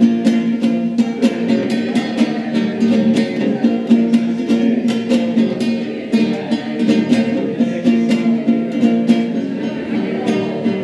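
Nylon-string classical guitar strummed in an instrumental passage, with quick, evenly spaced strokes over ringing chords.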